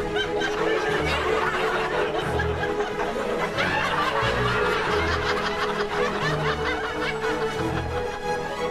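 Light background music with a canned laugh track of chuckles and snickers over it.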